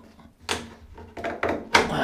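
Bath panel being pried and pulled away from the side of a bath. There is a short knock about half a second in, then louder scraping and knocking near the end.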